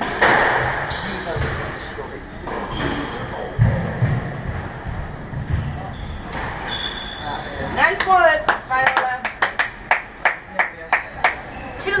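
A squash rally: the rubber ball smacking off racquets and the court walls, with sneakers squeaking and thudding on the hardwood floor. The hits come thick and fast in the last few seconds before the point ends.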